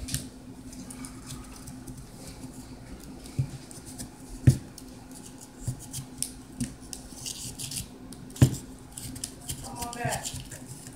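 Scattered light knocks and clicks of small household objects being handled, with two sharper thumps, one about halfway through and one near the end, over a steady low hum.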